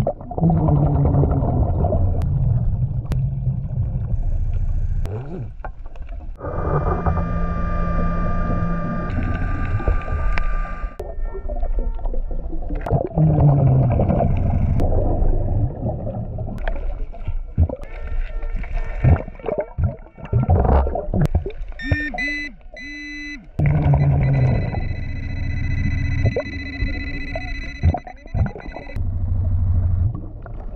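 A diver breathing underwater through a regulator fed by a surface-supplied hookah hose: several breaths, the inhalations drawing a steady whining squeal and the exhalations letting out rumbling bubbles with a falling pitch.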